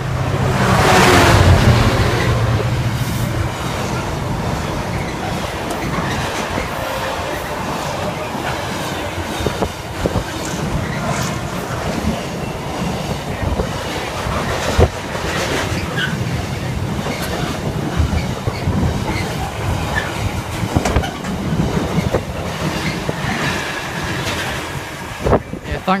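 Freightliner Class 66 diesel locomotive 66416 passing close by, its two-stroke V12 engine loudest in the first couple of seconds. A long container freight train then rolls past with steady rumble and regular wheel clicks on the track, ending as the last wagon passes near the end.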